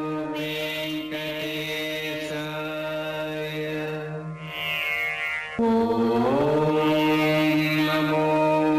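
Devotional music with a chanted, mantra-like melody over a steady drone. A little over halfway through, a louder held note comes in, slides up in pitch and then holds.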